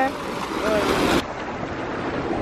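Pool water jet churning and splashing, a steady rushing noise. A little over a second in it changes abruptly to a duller, quieter hiss.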